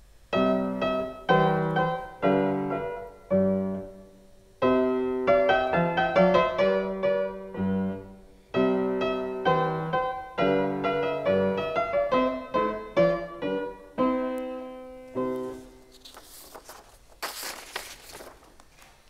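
Fortepiano playing a calm passage in short phrases with brief pauses, the last notes dying away a few seconds before the end. A faint rustle follows.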